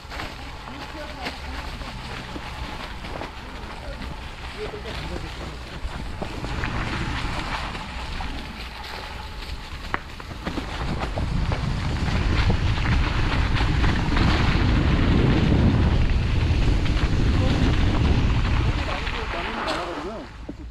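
Mountain bike rolling down a trail covered in dry leaves, with scattered rattles and clicks. Wind buffets the camera microphone, getting louder from about halfway through and easing near the end.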